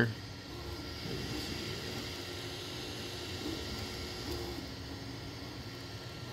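Creality Ender 3 V3 SE 3D printer running mid-print: a steady fan hiss with the faint whine of its stepper motors, which changes pitch every second or so as the print head and bed change moves.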